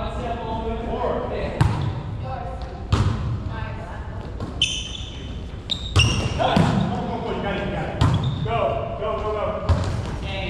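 A volleyball being struck by hands and arms during a rally on an indoor court: about five sharp smacks a second or two apart, each echoing in the hall, over players' voices.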